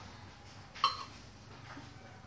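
A wooden spoon stirring in a stainless steel pot, with one sharp clink and a short metallic ring a little before the middle.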